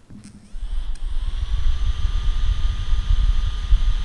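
A Red Magic 3S smartphone's built-in cooling fan spinning up. Its whine rises in pitch about a second in, then holds as a steady high whine over a low rumble, recorded with the volume boosted.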